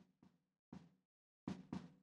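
Faint drum hits from a programmed EZdrummer 2 loop, heard through the soloed snare-bottom microphone: only the kick drum's leakage into that mic is left, with its mic bleed turned right down. The hits are a little louder near the end.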